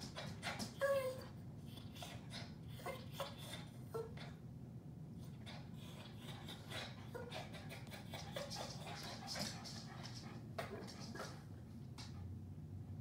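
Rain falling and dripping in irregular taps over a steady low background hum, with a brief high whine about a second in. No thunder is heard.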